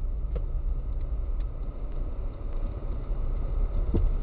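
Steady low engine and tyre rumble of a car driving slowly, heard from inside the cabin through a dashcam microphone, with a couple of faint clicks.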